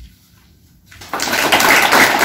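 A brief hush, then audience applause breaks out about a second in and carries on steadily.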